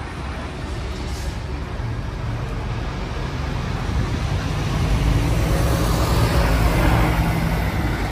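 Street traffic: a motor vehicle's low rumble, growing louder over the second half.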